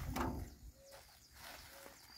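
A woven plastic sack rustling briefly as it is shaken open, with low wind rumble on the microphone, both fading out within the first half second.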